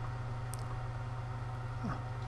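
A steady low hum with faint hiss, and one faint click about half a second in.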